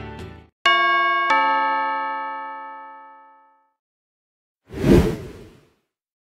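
A two-note ding-dong chime sound effect, the second note about half a second after the first, both ringing out and fading over about two seconds. About five seconds in comes a short burst of noise lasting about a second.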